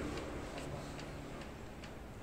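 Light ticks of a marker pen tapping and stroking on a whiteboard, about five faint clicks roughly every half second, over a low steady room hum.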